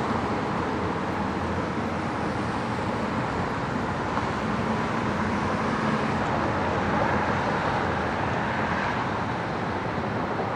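Steady traffic noise of motor vehicles running on a freeway, even throughout with no distinct events.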